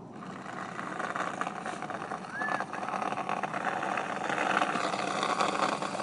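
Scale RC truck (RC4WD Trailfinder 2) pushing its plow, a grainy scraping noise that builds up over the first few seconds and eases off near the end. There is a short squeak about two and a half seconds in.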